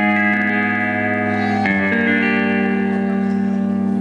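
Live instrumental music: sustained, held chords with no decay, changing to a new chord about a second and a half in.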